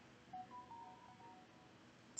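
Near silence except for a faint, muffled burp stifled behind a hand, lasting about a second from a third of a second in.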